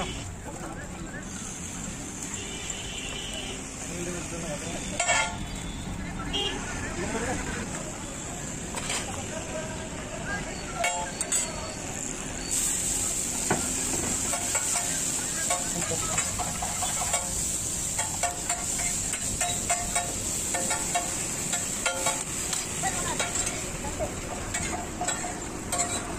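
Oil sizzling on a large flat iron tawa under a frying lachha paratha, with scrapes and taps of a metal spatula on the griddle. The sizzle gets louder about halfway through.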